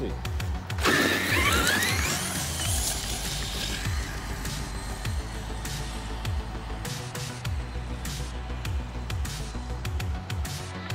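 Traxxas X-Maxx 8S electric RC monster truck launching about a second in: its brushless motor whine climbs steeply in pitch for about two seconds as it accelerates away on a top-speed run. Background music plays throughout.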